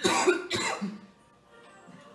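Two short, loud coughs about half a second apart, over faint music.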